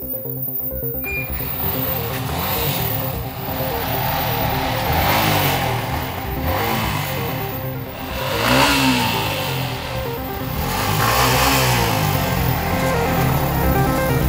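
A Yamaha sport motorcycle's engine revved several times, its pitch rising and falling with each blip of the throttle, over background music.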